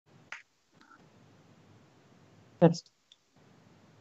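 A quiet small room with a sharp click near the start, a faint tap just before a second in, and a brief vocal sound from a woman about two and a half seconds in.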